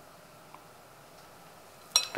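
Quiet room tone with a faint tick about half a second in and a sharp click near the end.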